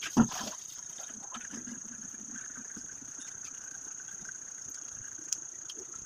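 A single sharp knock just after the start, then a steady faint background with a constant high-pitched whine and a small click near the end.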